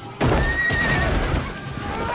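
Battle soundtrack from a TV drama: a horse whinnying over dense battle noise, with music underneath, all coming in suddenly just after the start.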